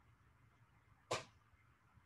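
Near-silent room tone broken by a single brief, breathy swish about a second in.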